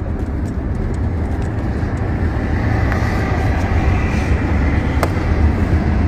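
Steady low rumble of a car heard from inside its cabin, with a single short click about five seconds in.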